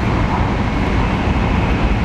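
Steady low rumble of a moving train, heard from inside the carriage.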